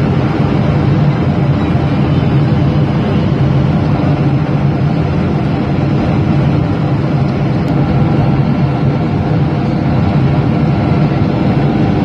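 Steady cabin noise of a jet airliner heard from a window seat beside the wing-mounted turbofan engine: a loud, low hum with several steady tones over it.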